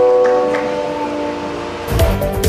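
Background music: a sustained chord of several steady tones, slowly fading. A beat-driven electronic track cuts in at the very end.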